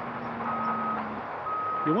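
Reversing alarm of heavy equipment at a rock quarry: a single-pitch beep about once a second, each beep about half a second long, two of them here, over steady background noise from the quarry.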